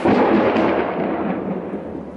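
A thunderclap from a nearby lightning strike: it starts suddenly and loudly, then rolls away over about two seconds, the higher part fading first.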